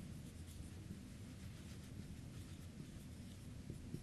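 Faint scratching of a marker pen writing on a whiteboard, with small ticks as the tip touches the board.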